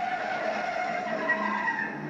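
1968 Ford Mustang fastback and Dodge Charger V8 muscle cars racing in a film car-chase soundtrack, engines running hard with tires skidding, played back at a moderate level. Faint wavering squeal tones run over a steady noisy rush.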